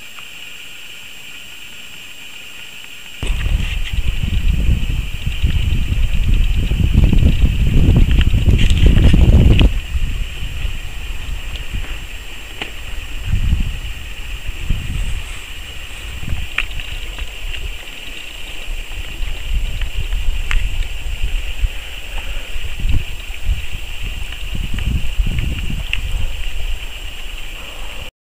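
Wind buffeting the camera microphone: a steady hiss, then from about three seconds in a low rumble that comes and goes in gusts, loudest for a few seconds near the start.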